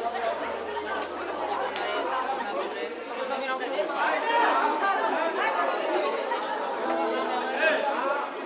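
Crowd chatter: many people talking at once in a large hall, overlapping voices with no music playing.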